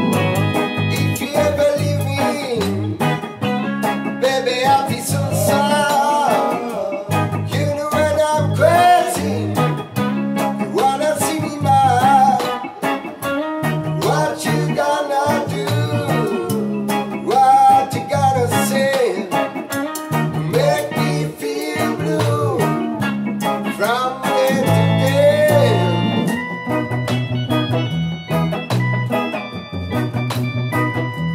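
Rocksteady band playing: electric guitar and keyboard over a rhythmic bass line.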